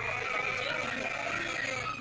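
A high voice holding a long, slightly wavering sung note.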